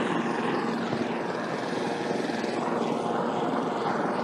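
Helicopter sound effect: rotor and engine running steadily.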